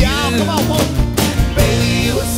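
Live country band music: male voices singing a sliding, wordless line over acoustic guitars and a steady drum beat.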